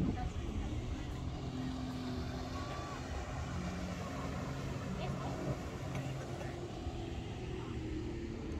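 Jet ski engine running out on the water, its pitch shifting up and down as it speeds across, with people's voices in the background.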